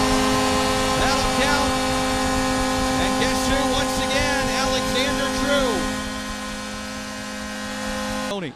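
Ice hockey arena goal horn sounding one long steady multi-tone blast, signalling a home-team goal, over a cheering crowd. The whole sound eases slightly in level for the last couple of seconds.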